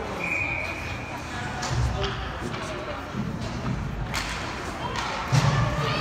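Ice hockey rink ambience: scattered voices from players and spectators, with a few dull thumps and a sharp knock. A brief, steady high whistle-like tone sounds in the first second.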